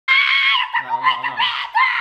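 A woman's loud, high-pitched excited scream, followed by more shrieking with a lower voice joining in under it about three quarters of a second in.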